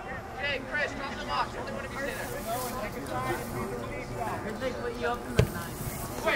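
Scattered distant voices of players and spectators at an outdoor soccer game, with no one speaking close by, and a single sharp knock about five and a half seconds in.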